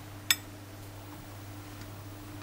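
A single sharp clink about a third of a second in, as a hand sets a round of fresh cheese down on a ceramic serving plate, over a steady low hum.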